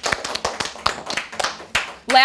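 A small group of children clapping their hands, the claps uneven and scattered rather than in unison.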